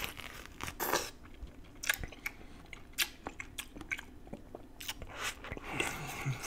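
Close-miked biting and chewing of juicy grapefruit flesh: wet crunches and smacks, with a few sharper bites about a second apart.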